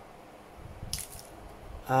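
Faint handling noise of food packaging, a plastic coffee sachet and a paperboard takeout box being moved, with one short crinkle about a second in.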